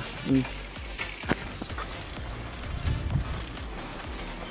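An old single-speed bicycle being ridden on a paved road, rattling and knocking, with one sharp click about a second in. Background music lies underneath.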